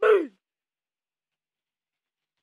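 A young man's short voiced sigh at the very start, lasting about a third of a second, with a falling pitch.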